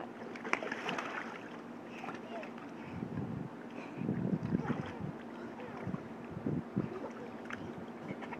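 Shallow water sloshing and splashing in an inflatable paddling pool as a toddler crawls through it, in uneven bursts that are loudest around the middle.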